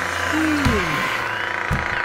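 A cartoon dragon's wordless, smug humming vocal sound, one pitch glide that rises slightly and then falls away, over steady background music. Near the end, a paper page-turn sound begins.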